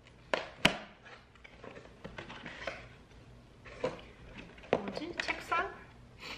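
Hands opening a cardboard Playmobil advent calendar and handling the pieces inside: two sharp clicks near the start, then scattered cardboard and plastic rustling and tapping, with a brief vocal sound about five seconds in.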